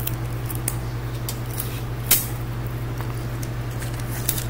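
Hands handling cardboard candy boxes and pieces of adhesive tape: a few light clicks and taps, one sharper tap about two seconds in, over a steady low hum.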